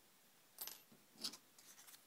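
Faint handling sounds of string and card-stock paper pieces being worked by hand: a short scuff about half a second in, a sharper tap a little after a second, then a few light ticks.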